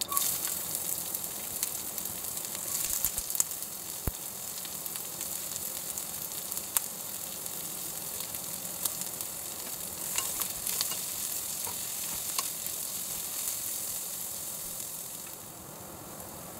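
Sliced onion frying in hot oil with mustard seeds in a stainless steel pan: a loud, steady sizzle that starts suddenly as the onion goes in, with scattered sharp ticks from stirring. The sizzle eases slightly near the end.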